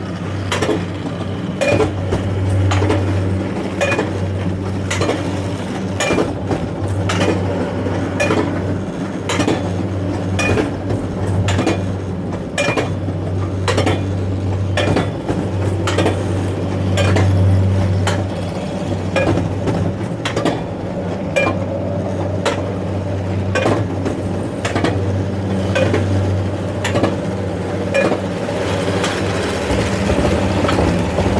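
Mountain-coaster cart moving slowly up its metal rail: a steady low hum with a sharp metallic click about one to two times a second.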